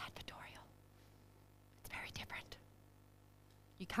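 Faint, breathy whispered speech in two short stretches, one at the start and one about two seconds in, with quiet room tone between.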